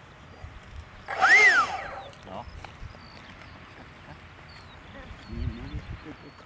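Electric ducted fan of a model BAE Hawk jet briefly run up and back down, a whine that rises and falls within about a second.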